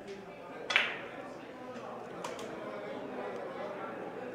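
Low murmur of voices in a billiards hall, with one loud, sharp click that rings briefly about three-quarters of a second in and two fainter clicks a little past the middle.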